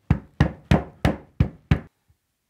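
Six sharp knocks about a third of a second apart, each ringing briefly: a hand slapping down the felt lining in the bottom of a wooden box.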